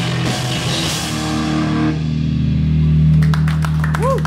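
Hardcore punk band playing live, with distorted electric guitar, bass and drums. About halfway through the drums and cymbals stop and a low, distorted chord is held and rings out as the song ends. Scattered sharp claps begin near the end.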